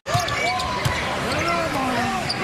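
Live basketball game sound in an arena: a ball dribbled on the hardwood court, with a few sharp bounces, short squeaky chirps from sneakers, and steady crowd noise. It begins after a brief dropout at an edit.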